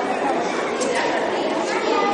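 Many children chattering at once, a steady din of overlapping voices in which no single voice stands out.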